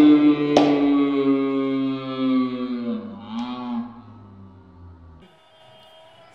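Men's drawn-out cheering shout, one long held 'oooh' that slowly falls in pitch and fades. A sharp hand clap comes about half a second in, and the shout cuts off abruptly about five seconds in.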